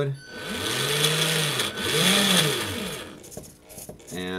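Small electric drive motor on an RC speed controller spinning up and back down twice, the second run shorter than the first, with a whirring hiss. It is running under RC transmitter control.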